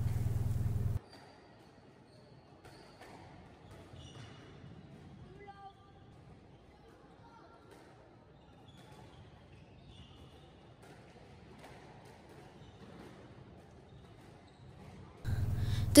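Faint live sound of a squash rally: the ball is struck and knocks off the walls, and court shoes give short squeaks on the wooden floor. A louder low steady hum plays at the start, cuts off about a second in, and returns just before the end.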